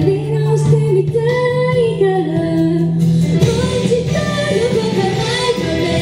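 A woman singing live into a microphone over backing music. The accompaniment grows fuller and brighter about halfway through.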